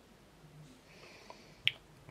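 Faint room tone, broken about one and a half seconds in by a single short, sharp click.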